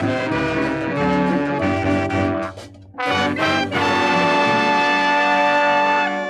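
Calypso band playing the instrumental close of the song: a short break a little before halfway, then a long held final chord.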